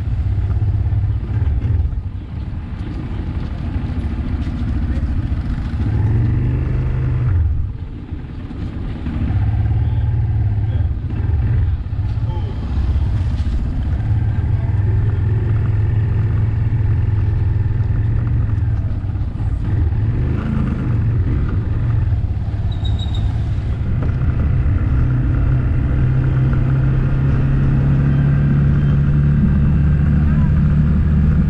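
Small motorcycle engine running as it is ridden. The note drops briefly about eight seconds in, then climbs steadily near the end as the bike picks up speed.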